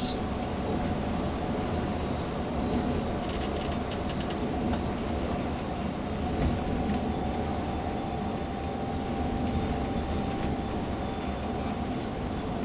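Steady engine and road rumble heard inside a moving tour coach at road speed, with a faint steady whine over it.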